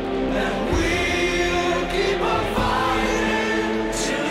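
Music with a choir singing held notes in slow, changing chords.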